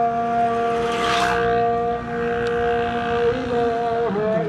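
A vehicle horn held down in one long, steady tone that does not change pitch.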